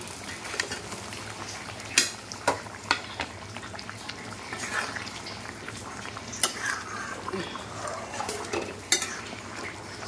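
A steel ladle stirring fried potatoes into thick simmering curry gravy in a metal kadai, scraping the pan with sharp clinks of metal on metal about two seconds in and several more times later.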